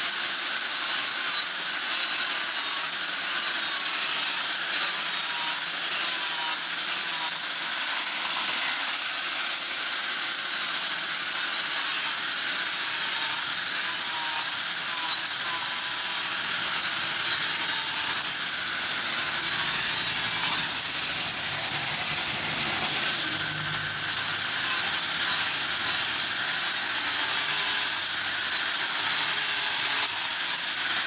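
Angle grinder with a sanding disc running at high speed against a steel axe blade: a steady high whine that dips and recovers over and over as the disc is pressed into the metal, over the hiss of the abrasive on steel.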